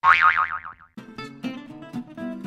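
A cartoon-style "boing" sound effect, a loud wobbling tone that falls in pitch and fades within about a second, followed by background acoustic guitar music starting up again.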